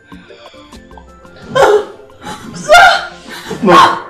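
Soft background music, then from about a second and a half in a person wailing in three loud, high-pitched cries about a second apart.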